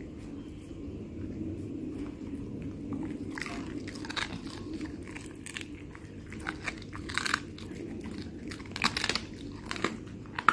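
A Labradoodle chewing raw horse meat with cartilage, the cartilage crunching between its teeth in irregular bites that come thicker from about three seconds in, the loudest around seven and nine seconds.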